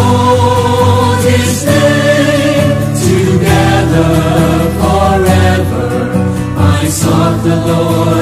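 A group singing a Christian worship song with instrumental backing, the voices holding long notes that change every second or two over a steady bass.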